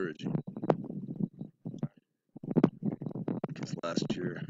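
Gusty wind buffeting the microphone in choppy rumbles, dropping out briefly about halfway through, with faint fragments of a man's voice.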